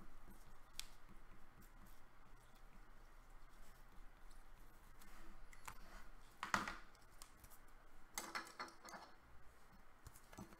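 Hands handling trading cards and clear plastic card sleeves on a table: faint scattered clicks, one sharp crinkle about six and a half seconds in, and a cluster of crinkles near the end.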